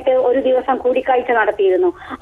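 A woman speaking Malayalam over a telephone line, her voice thin and narrow.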